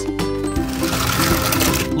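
Plastic toy truck trailer rolled across a tabletop, its wheels and body giving a dense, rapid rattle, over background music.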